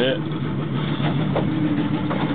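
Boat motor idling steadily with a low, even hum.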